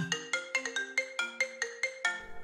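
Mobile phone ringing with a marimba-style ringtone: a quick melody of struck, ringing notes, about eight a second.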